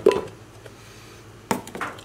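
Brief knocks of a plastic cup against a glass measuring jug as dry plaster powder is tipped into it, then a sharp tap about one and a half seconds in, followed by a few smaller knocks.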